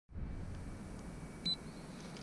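A single short, high beep from the RunCam 2 action camera about one and a half seconds in, over a low rumble on the camera's microphone.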